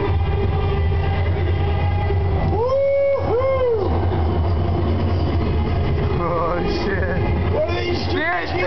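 Steady low rumble of a bobsled ride simulator running, with riders yelling over it, twice about three seconds in and again near the seventh second.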